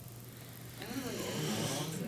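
Faint, indistinct voice murmuring off-microphone from about a second in, over the low steady hum of room tone.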